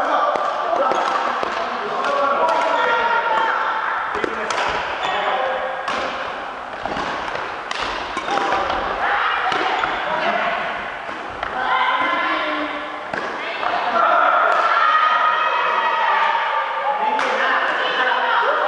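Voices talking in an echoing sports hall, with sharp clicks of badminton rackets striking a shuttlecock and thuds of footfalls on a wooden gym floor scattered throughout.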